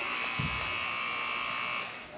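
Gymnasium scoreboard horn giving one steady buzz of nearly two seconds that cuts off abruptly: the signal for a substitution at the scorer's table.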